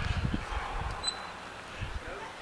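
Low, irregular thuds and rumble from a handheld phone being jostled while walking, loudest in the first half second. A brief high chirp sounds about a second in.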